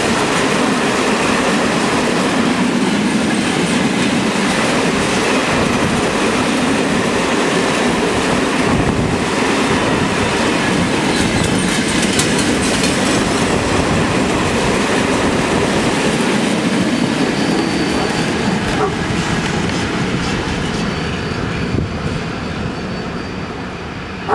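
Long freight train of open-top wagons rolling past at close range, wheels clattering over the rail joints in a steady rumble. A faint, thin high tone of wheel squeal joins about two-thirds of the way in. The sound eases off near the end as the last wagons go by.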